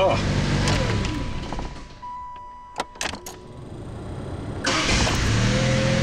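The 1984 Chrysler K-car wagon's Mitsubishi 2.6 four-cylinder engine runs, is switched off and dies away, a few key clicks follow, and it is restarted and running again near the end; it starts readily after a fresh tune-up.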